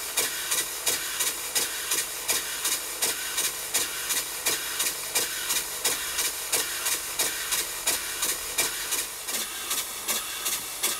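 Cotswold Heritage Atlas model steam engine running steadily on compressed air, its exhaust hissing in even puffs about three times a second.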